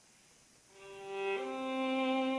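Violins of a small string ensemble playing held, bowed notes. They fade in out of faint room tone under a second in and grow louder, and the notes change about halfway through.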